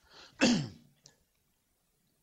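A man clears his throat once, a short rough burst about half a second in that drops in pitch, just after a faint breath.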